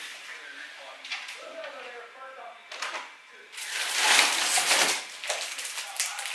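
Plastic packaging of a stack of tortilla wraps rustling and crinkling as it is handled, loudest from about three and a half seconds in.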